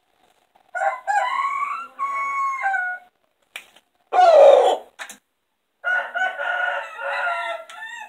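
Rooster crowing twice: a long crow of several held notes about a second in and another near the end, with a short, loud cry between them.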